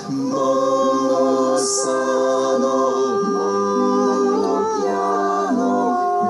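Unaccompanied singing into a microphone through a PA: several sustained vocal pitches sound together in choir-like harmony. The chord shifts about three seconds in and again near the end.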